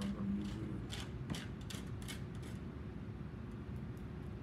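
A handful of short scrapes and taps from a palette knife working paint on a palette, bunched in the first two and a half seconds, over a steady low room hum.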